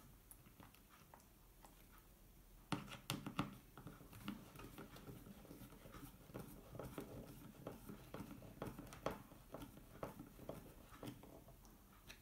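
Faint, irregular clicking and scraping of a hand screwdriver turning a small screw into a wooden frame through an acrylic cover, starting about three seconds in.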